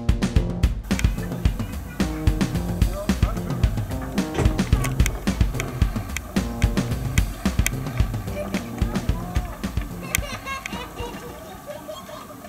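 Background music with a steady beat, fading out near the end.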